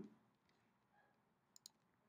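Two faint computer mouse clicks in quick succession near the end, against near silence.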